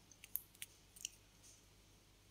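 A few faint, sharp clicks and pops in the first half, over a low hiss, as sliced onions fry in oil in an aluminium pressure-cooker pan and are stirred with a wooden spatula.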